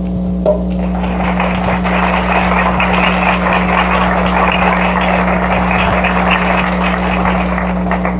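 Audience applauding, starting about half a second in and stopping just before the end, over a steady low hum on the recording.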